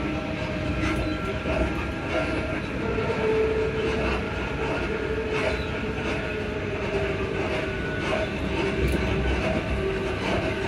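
A ScotRail Class 334 electric multiple unit running, heard from inside the passenger saloon. A steady rumble of wheels on rail carries a steady hum from its Alstom Onix traction equipment, with a few clicks over the rail joints.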